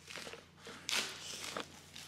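Plastic mailer bag crinkling and rustling as it is cut open with scissors, with a sudden louder rustle just before a second in.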